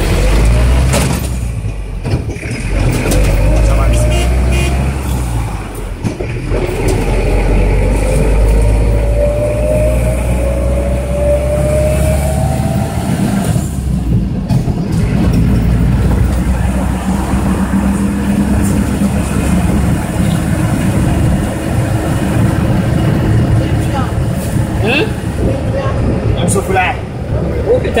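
Minibus engine and road rumble heard from inside the passenger cabin as the van drives. The engine note rises steadily for about ten seconds as it accelerates, drops briefly about halfway through, then settles into a steady cruise.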